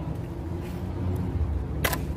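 A wooden stick being bent by hand, with a low rumble on the microphone and one sharp crack near the end as the stick gives partway without snapping through.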